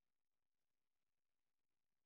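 Near silence: only a faint, even noise floor.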